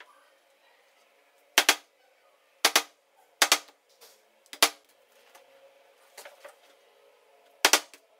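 Small hammer striking a hand-held punch to mark component hole positions on a circuit board through a printed layout: five sharp taps at uneven intervals, some doubled, with a couple of lighter knocks between them.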